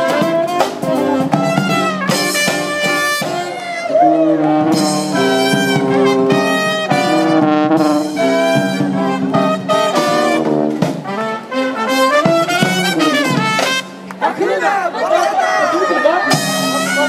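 Live brass band of trumpets, saxophone and sousaphone with drums playing an upbeat tune. The music drops briefly about fourteen seconds in, then picks up again.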